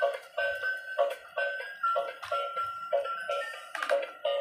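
Tinny electronic beeping tune with a steady beat of about two and a half pulses a second, played by the small built-in speaker of a battery-powered transparent gear toy car.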